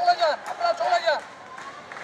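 A man's voice amplified through a handheld megaphone for about the first second, then a lull with quieter street background.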